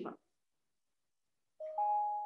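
A woman's speech breaking off, then dead silence, then a steady two-pitched tone through the last half second.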